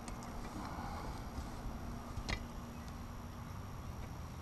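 Low steady rumble with a thin faint hum, broken by a single sharp click a little over two seconds in.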